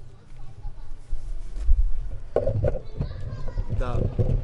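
Low rumbling wind and handling noise on a handheld camera's microphone, with irregular knocks in the second half.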